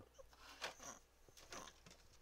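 Near silence: faint room tone with a few soft, faint clicks.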